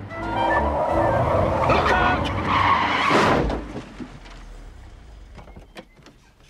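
Car tyres squealing in a hard skid, with music playing. The skid ends in a loud crash about three seconds in, followed by faint scattered clicks.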